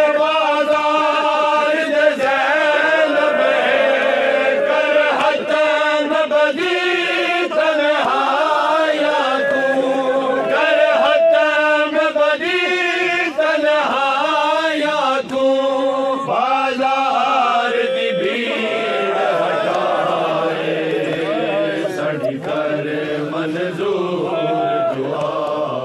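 A group of men chanting a noha, a Shia mourning lament, together in a continuous melodic line with long held notes.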